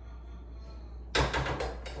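A sudden loud clatter about a second in: a few quick hard knocks in well under a second, over a steady low hum.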